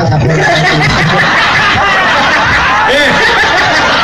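An audience laughing, many voices at once, with a man calling out "Hei" near the end.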